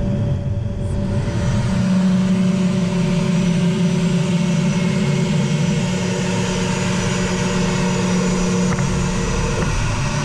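A-10 Thunderbolt's twin TF34 turbofan engines running at high power, heard from inside the cockpit with a steady whine over a broad rumble, as the jet rolls fast along a dirt strip. The pitch shifts slightly near the end.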